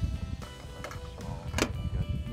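Background music with held tones over a low rumble, and one sharp click about one and a half seconds in.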